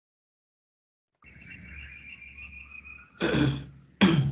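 Faint steady hum and hiss of an open microphone, with a thin high whine, starting about a second in, then a single person's cough near the end.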